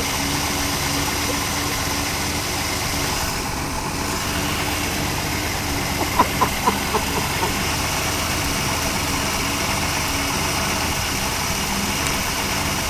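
AMC 232 straight-six in a 1966 Rambler Classic 770 idling steadily on one of its first runs as a newly installed engine.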